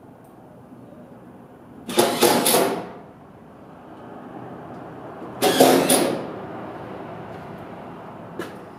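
Two loud bursts of work noise at a cargo trailer's side, each under a second, about three and a half seconds apart.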